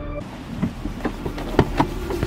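Car doors being unlatched and opened: a run of clicks and knocks, the two loudest close together near the end.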